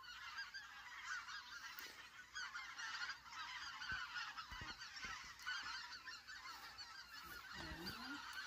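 A large migrating flock of greater white-fronted geese (specklebellies) calling overhead: a continuous, faint chorus of many overlapping high calls.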